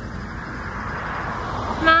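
A car driving past on the road, its road noise swelling as it draws near.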